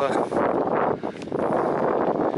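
Wind buffeting the microphone, with a snatch of a man's voice at the very start.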